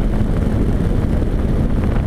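Suzuki V-Strom 650 motorcycle cruising at highway speed: steady wind rushing over the camera microphone with the V-twin engine running underneath.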